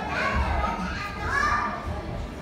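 Young children's voices: high-pitched calls and chatter, in two short bursts.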